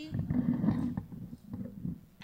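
Handling noise from a handheld microphone being fitted into a mic stand clip: a second of close rustling and bumping, then a few lighter clicks.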